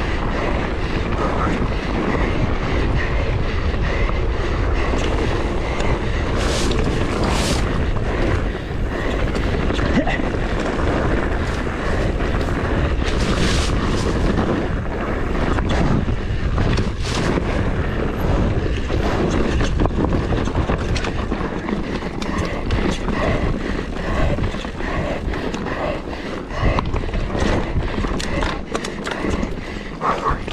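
Fast downhill mountain-bike descent heard on an action camera: steady wind buffeting the microphone over tyres running on loose dirt and gravel and the bike rattling, with a few sharper knocks from hits on the trail.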